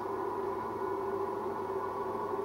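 Background music: a soft, sustained drone of several held tones, gong-like, with no beat.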